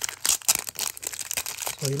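Clear plastic bag crinkling as it is pulled open by hand: a dense run of sharp crackles and rustles that stops shortly before speech resumes.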